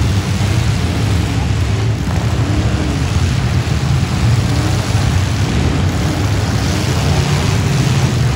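Engines of several demolition derby vans and trucks running together in an arena: a loud, steady low rumble, with engine pitch rising and falling now and then as they rev.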